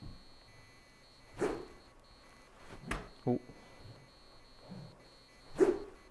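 A golf club swung one-handed strikes a ball off a hitting mat with a single sharp crack about three seconds in. Two short noisy bursts come about a second and a half in and near the end.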